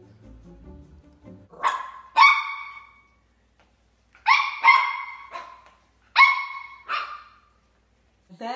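A small puppy barking in short, high-pitched yaps, about seven in all, coming in three bunches from about a second and a half in. Faint music plays under the first second or so.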